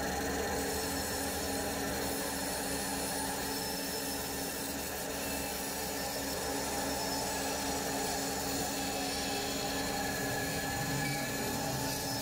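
Bandsaw running with a steady hum, its blade cutting lengthwise through a thin walnut handle blank to split it in half.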